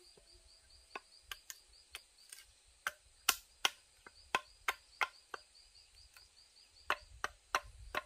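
Machete chopping into the top of an upright green bamboo pole: a string of sharp, irregular strikes, roughly two a second, the loudest a little over three seconds in. Insects chirp steadily in a fast pulse behind.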